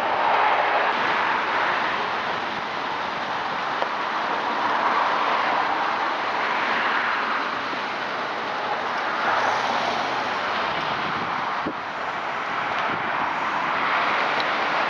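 Pickup truck pulling away and driving off: a steady rushing noise of engine and tyres that swells and eases slowly.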